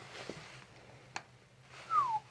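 Quiet breathing and a single sharp click about a second in, while the head is held turned for a chiropractic neck adjustment. A short squeak falling in pitch comes at the very end.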